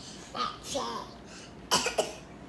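A young child's short vocal sounds, then a sharp cough near the end.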